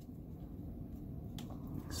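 Quiet room with faint handling of a stack of trading cards held in the hands, with one light click about one and a half seconds in.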